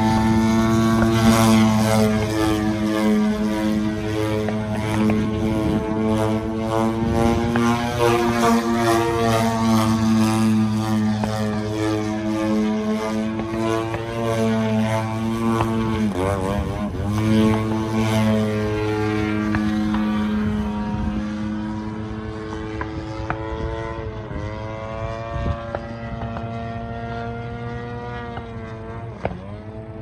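Radio-controlled aerobatic airplane's engine and propeller running, the pitch rising and falling with throttle changes and a quick wobble in the revs about halfway through. The sound fades in the last third as the plane climbs away.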